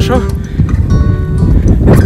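Wind blowing on the phone's microphone, under background music and a man's voice.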